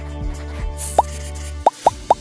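Background music with short rising 'bloop' sound effects, one about a second in and two quick ones near the end, the kind laid over an animation as drawings pop onto the screen.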